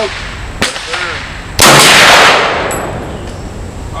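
A single loud rifle shot from a muzzle-braked rifle about one and a half seconds in, its report trailing off over most of a second.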